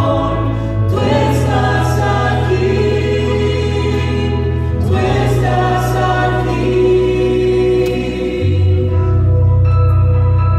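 Spanish-language praise-and-worship song sung by a man and a woman over sustained keyboard and bass chords, which change roughly every four seconds.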